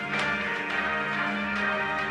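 Mobile phone ringing with a chiming, bell-like ringtone of repeated notes: an incoming call.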